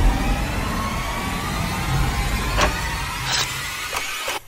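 Dark ambient sound-design rumble, a deep noisy drone with faint wavering tones over it, with two short clicks about two and a half seconds in and again under a second later.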